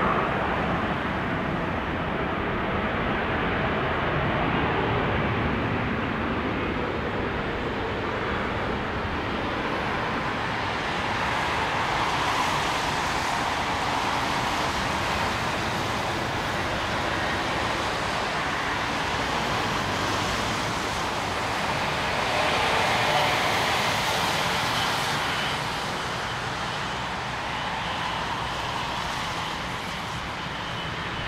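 Boeing 777-200ER's GE90 jet engines running as the airliner rolls out and slows on a wet runway after landing: a steady rush of engine noise with a faint whine slowly falling in pitch in the first several seconds, easing a little near the end.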